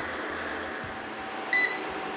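Steady hum and hiss of a commercial kitchen with pancakes frying in butter in a pan. One short, high electronic beep sounds about one and a half seconds in.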